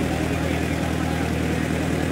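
Ferry boat's engine running steadily, a constant low drone with an even, fine pulsing.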